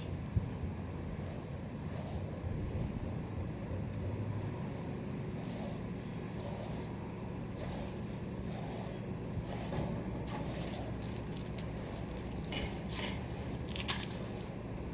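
A steady low rumble throughout, with faint scratchy strokes of a brush through a dog's coat, more of them near the end.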